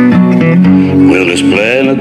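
Acoustic guitar playing in a slow country-blues song between sung lines. About a second in, a voice slides into a note over the guitar.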